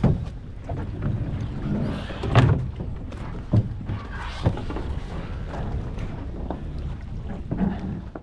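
Irregular knocks and thuds over a low rumble, about five of them, the loudest about two and a half seconds in.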